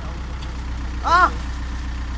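Engine of a heavy machine idling steadily, a low drone throughout. A single short shout cuts in about a second in.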